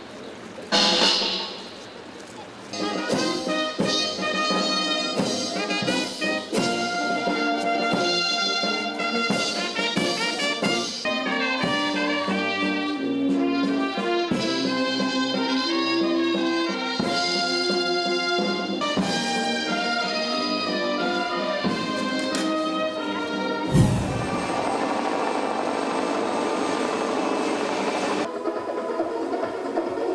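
A brass band playing slow music in long held notes. Near the start comes one short loud burst before the band sets in, and about six seconds before the end a sharp knock followed by a few seconds of rushing noise under the music.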